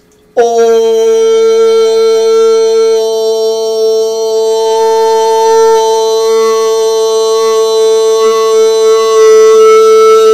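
A man's voice toning one long unbroken note, starting abruptly and held steady in pitch, its emphasised overtones shifting higher as the vowel shape changes.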